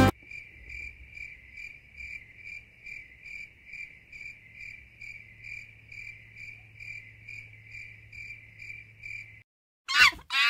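Cricket chirping, evenly paced at about two chirps a second over a faint low hum, cutting off shortly before the end; it is laid over the school footage as an edited-in sound effect.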